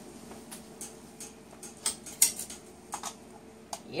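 Scattered light clicks and clinks of kitchen things being handled, irregularly about two or three a second, over the steady hum of a room fan.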